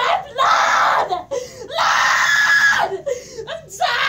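A woman screaming: two long screams about half a second apart, the second longer, with shorter broken cries around them.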